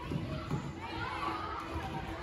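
Many children's voices chattering and calling out over one another as they play in a school gymnasium.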